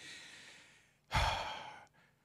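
A man's audible breathing in a pause in his speech: a faint breath trailing off, then a louder breath or sigh starting about a second in and lasting under a second.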